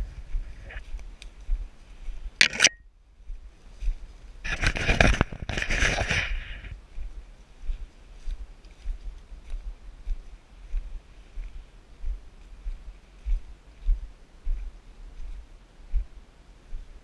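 Footsteps of two people walking through leaf litter on a forest trail, picked up as low thumps at a steady walking pace. There is a sharp knock a couple of seconds in and a louder rustling stretch lasting about two seconds around the five-second mark.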